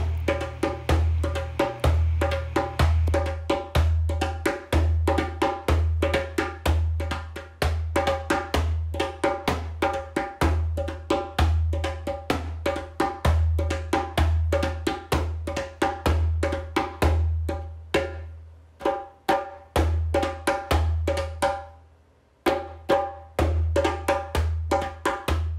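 Rhythmic percussion music: quick, evenly spaced strikes with a woody, pitched ring over a pulsing low drum. It thins out and fades away a few seconds before the end, then comes back suddenly.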